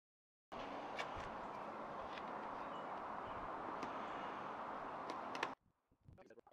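A steady background hiss with a few faint clicks. It starts abruptly about half a second in and cuts off just as suddenly near the end.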